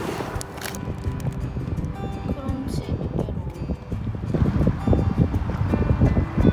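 Background music over water splashing from a kayak paddle in lake water; the splashing grows louder in the last two seconds.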